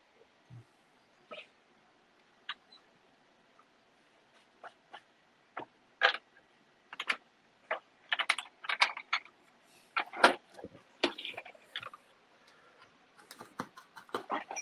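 Light, irregular clicks and taps of small tools and metal clips being handled while soldering a circuit board, sparse at first and busier from about six seconds in.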